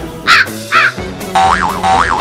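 Two harsh crow caws in the first second, of the kind used as a comic sound effect, followed by a pitched sound effect with two rising-and-falling notes near the end, over background music.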